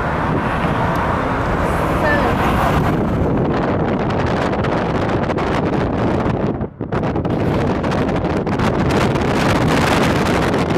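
Wind buffeting the microphone of a camera carried in a moving car, over road noise. It drops out briefly once, about seven seconds in.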